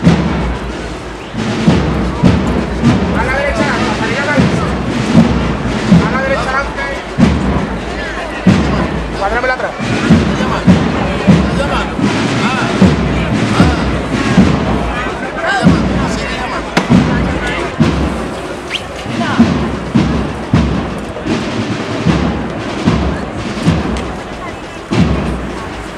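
Processional marching band playing in the street, its bass drum striking about once a second under wavering brass, with crowd voices throughout.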